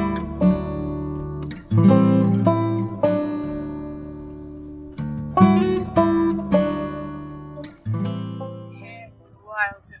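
Acoustic guitar music: chords struck every second or so and left to ring, dying away after about eight seconds.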